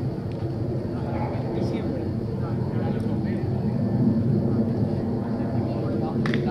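A steady, low engine drone, with faint voices mixed in.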